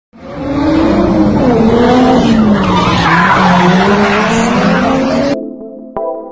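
A car skidding with tyres squealing: a loud rushing noise with a wavering, sliding pitch. It cuts off suddenly about five seconds in, and steady electronic music notes begin.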